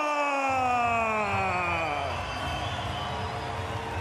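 A ring announcer holds the last syllable of the winning fighter's name in one long drawn-out call that falls in pitch and fades out after about two seconds. A low rumble comes in underneath about half a second in.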